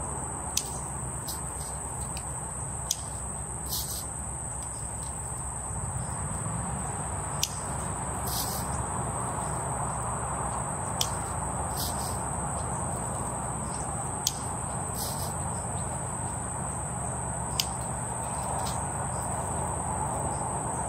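Steady, high-pitched chorus of summer insects, with sharp snips of hand pruners about every three seconds as spent flowers are cut.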